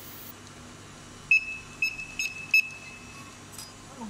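Four short, high-pitched electronic beeps in quick succession, starting about a second and a half in.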